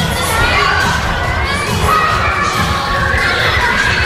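Many children shouting and squealing at once in a large hall, a loud, continuous din of overlapping high voices.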